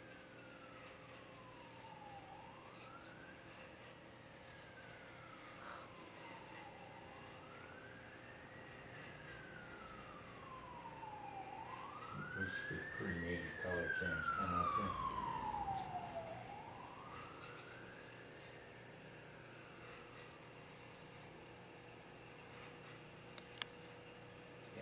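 Emergency vehicle siren wailing, its pitch sweeping slowly up and down about every four to five seconds, growing louder toward the middle and then fading, with a low rumble at its loudest. A faint steady hum runs under it.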